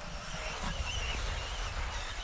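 Trackside sound of 1/10-scale electric off-road racing buggies: a faint, high, wavering motor whine that rises and falls with the throttle, over a low steady rumble.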